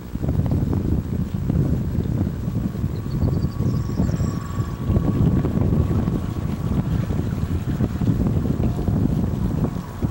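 Wind buffeting the microphone: a loud, gusty low rumble that rises and falls.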